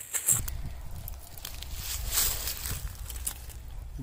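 Footsteps and rustling through dry grass and brush, with many small crackles over a steady low rumble; the rustling swells about two seconds in.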